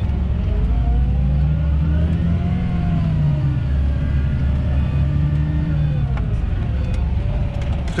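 John Deere tractor engine heard inside the cab, running steadily under load while pulling a seed drill. Its deep drone rises slightly in pitch after about a second and falls back again near the end.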